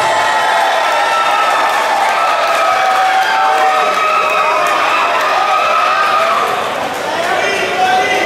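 Ringside crowd shouting and cheering, many voices over one another, right after a knockout.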